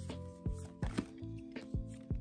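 Soft background music of sustained, held tones, with irregular light clicks and taps from tarot cards being handled and laid down.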